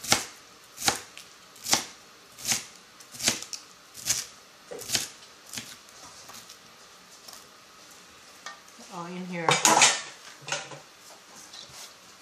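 Cleaver chopping fresh dill on a plastic cutting board, crisp strikes at about one a second for the first five seconds or so, then a louder scraping clatter about ten seconds in.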